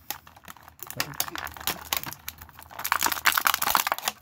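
Clear plastic packaging bag crinkling and crackling as an action figure is worked out of it, with sharp clicks from scissors cutting the wire twist ties that hold the figure. The crinkling grows denser and louder in the last second or so.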